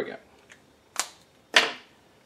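Three sharp clicks and knocks, the second and third about a second and half a second apart: a felt-tip marker being capped and set down on a table.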